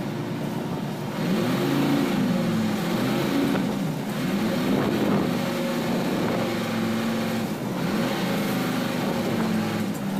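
A fishing boat's engine running under way, its pitch swinging up and down several times in the first half and then holding steadier, over wind and rushing sea.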